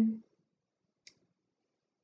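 A woman's held, trailing word ends just after the start, then near silence broken by a single short, faint click about a second in.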